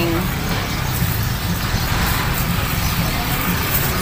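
Steady outdoor street noise: a continuous low rumble with a hiss over it, like road traffic, with no single event standing out.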